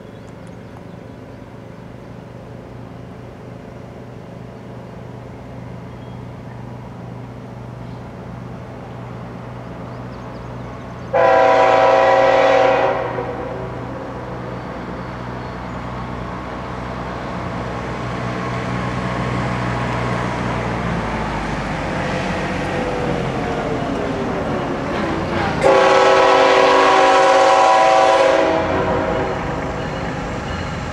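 An approaching GE ET44AC freight locomotive with a rumble that grows louder throughout. Its horn sounds two long blasts, the first about eleven seconds in and a longer one near the end.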